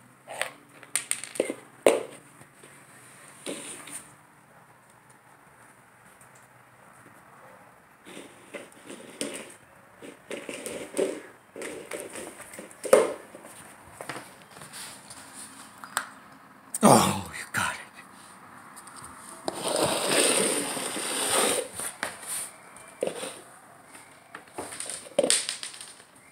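Irregular knocks, clicks and scrapes of a plastic treat cup on a hardwood floor as a Border Collie puppy works at it to get the food out, with a longer stretch of scraping about twenty seconds in.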